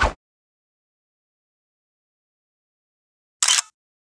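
Dead silence broken by two short editing sound effects: a brief hit at the very start, and a louder, hissy burst lasting about a third of a second around three and a half seconds in, as a graphic comes on screen.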